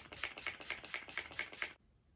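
Face-mist pump spray bottle spritzed over and over in quick succession, several short sprays a second, stopping shortly before the end.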